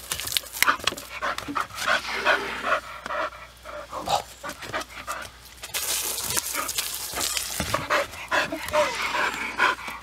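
Bull terrier panting hard and snapping while chasing a jet of water, with the spray hissing, louder from about six seconds in.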